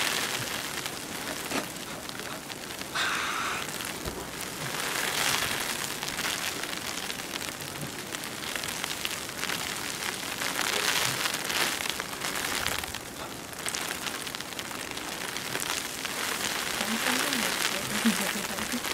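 A steady rushing hiss that swells and fades every few seconds.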